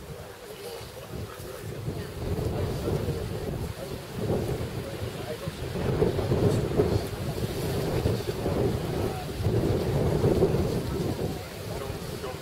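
Wind buffeting the microphone: a low rumbling noise that swells and fades in several gusts, loudest in the second half.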